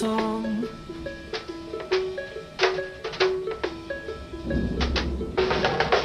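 Background music: an instrumental stretch of a pop song, a melody of short notes over drum hits, growing fuller near the end.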